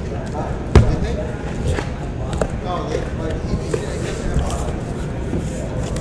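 Cardboard shipping case being handled and opened by hand: flaps and box knocking, with a sharp thump about a second in and a few lighter knocks after it.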